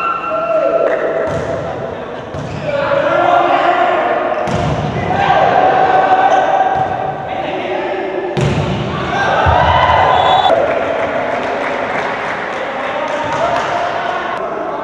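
Volleyball being served and spiked in a large gymnasium: several sharp hits of the ball, with players and spectators shouting and cheering loudly throughout, echoing in the hall.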